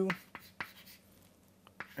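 Chalk writing on a chalkboard: a few faint, separate taps and short scratches of the chalk as letters are written.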